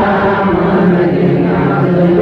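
A menzuma, Ethiopian Islamic devotional chant, sung by several male voices together on long held notes that bend slowly in pitch, without a break.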